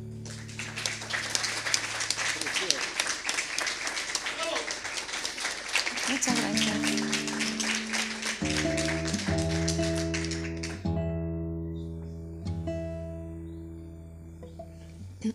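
Audience applauding for about ten seconds, then stopping. From about six seconds in, a nylon-string classical guitar plays a few ringing notes and repeated chords under the applause and on after it.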